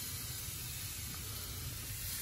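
Steady hiss with a low rumble underneath and no distinct events.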